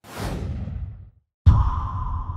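Title-card sound effects: a whoosh that falls in pitch and dies away over about a second, then, about a second and a half in, a sudden deep hit that leaves a low rumble and a steady ringing tone slowly fading.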